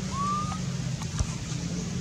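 A steady low engine-like hum, with a short rising whistled call near the start and a single sharp tap just after a second in.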